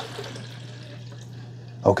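Water pouring steadily into the clear plastic water reservoir of a Keurig K-Iced coffee maker as the tank is filled.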